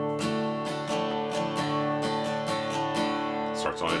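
Acoustic guitar strumming an open D chord in a steady down-and-up pattern, roughly two to three strums a second, the chord ringing on between strokes.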